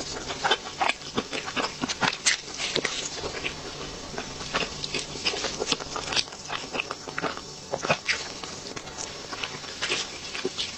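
Close-miked chewing of a chocolate cake slice with a crisp chocolate wafer top: irregular sharp crackles and wet mouth clicks throughout.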